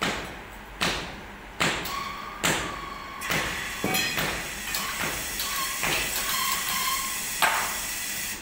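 Metal hand tools striking in a foundry sand mould: a run of sharp knocks, about one every 0.8 s at first, then closer together. Some blows leave a short metallic ring.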